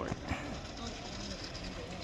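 Faint talking in the background with a single sharp knock at the very start.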